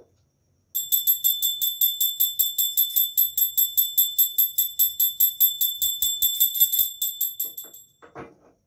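A handheld puja bell (ghanti) is rung rapidly and evenly during aarti, giving a bright, high ringing of about five or six strokes a second. It starts about a second in and fades out near the end.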